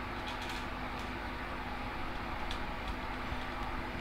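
Steady low room hum, with a few faint ticks from fingers handling and twisting stiff fluorocarbon fishing line.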